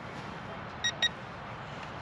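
Two short, high electronic beeps about a fifth of a second apart from the remote controller of a Sharper Image Thunderbolt toy stunt drone, over a steady outdoor background hiss.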